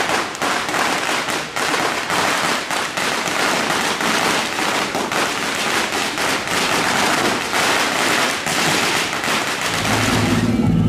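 Strings of firecrackers going off in a rapid, unbroken crackle of loud, closely packed cracks.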